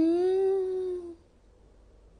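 A woman's drawn-out hummed 'mmm', one long note of about a second that rises slightly and then falls away.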